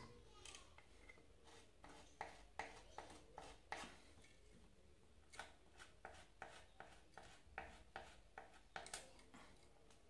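Small blade scraping the insulation off the end of a thin insulated copper coil wire: a run of faint, short scraping strokes, closer together in the second half.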